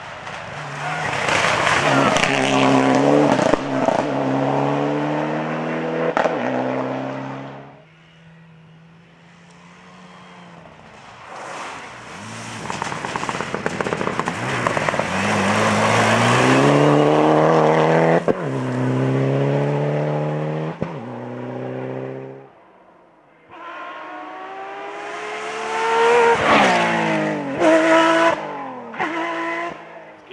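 Rally cars driven flat out on a special stage, one after another. Each engine revs up and shifts through the gears in steps, and short sharp cracks come near the end. One of the cars is a Mitsubishi Lancer Evolution's turbocharged four-cylinder.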